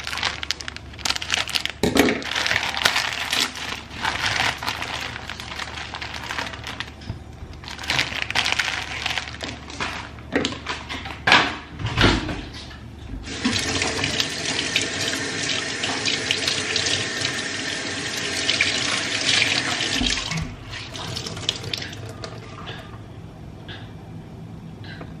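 Kitchen tap running into a sink, with clatter and a few sharp knocks of things being handled around it. Near the middle a steady run of water starts, then cuts off about four seconds before the end.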